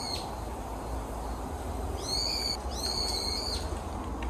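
A bird calling twice in the trees: two high, clear whistled notes about two and three seconds in, each well under a second long and sliding up at its start, over a steady low rumble.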